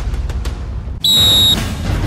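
Dramatic show music with a heavy low hit, then about a second in a single shrill, steady tone lasting about half a second: the signal that starts the race.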